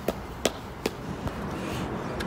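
Three sharp, short knocks in the first second, about a third of a second apart, over steady wind noise on the microphone.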